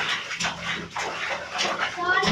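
Bare feet stomping and splashing in shallow bathwater in a tub, a rapid run of short splashes, with children's voices squealing in between.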